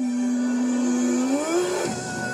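A pop-rock song with a singer holding one long note over full band backing; the note steps up in pitch near the end.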